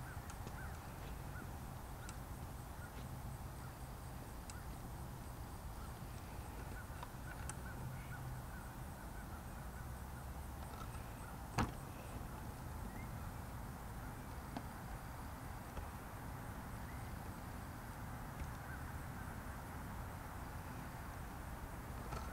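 Quiet outdoor ambience: a steady low rumble with faint scattered small sounds, and one sharp click a little past halfway.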